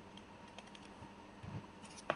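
Faint taps and clicks of a stylus on a pen tablet during handwriting, with a soft low knock about one and a half seconds in.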